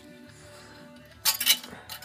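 A steel disc and exhaust pipe clinking metal on metal as the disc is handled on the pipe. There is a quick cluster of sharp clinks a little past halfway and another near the end.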